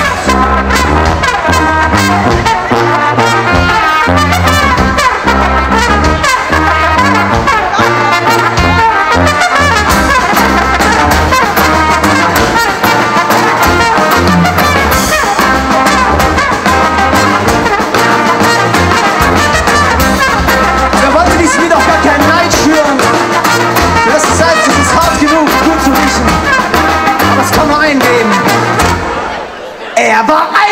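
Live ska band's instrumental break: trumpet and trombone playing the melody together over acoustic guitar and drum kit. The music dips briefly near the end.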